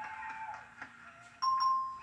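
Game show price board's electronic reveal chime: a steady bright tone starts suddenly about one and a half seconds in as a correct digit lights up in the car's price.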